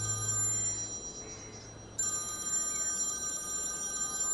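Mobile phone ringtone ringing for an incoming call: a chiming electronic tone that fades and starts again about two seconds in. A low held note of background music fades out in the first second.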